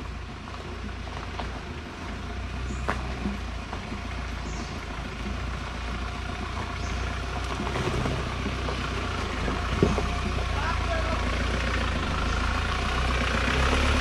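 Mahindra Thar 4x4's engine running at low revs as it crawls along a rutted dirt trail, a steady low rumble growing louder as the vehicle approaches. A few sharp clicks sound along the way, the clearest about ten seconds in.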